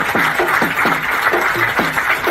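A small crowd of people applauding, steady clapping throughout.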